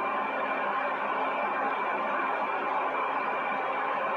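Steady background hiss with a faint hum, unchanging throughout.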